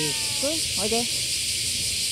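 A chorus of cicadas keeps up a steady, high-pitched hiss.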